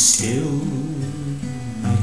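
A man singing a held, wavering note over acoustic guitar, with a fresh guitar strum near the end.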